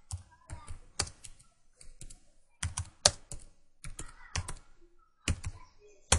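Typing on a computer keyboard: about fifteen irregular keystrokes, some in quick pairs, as a short phrase is typed.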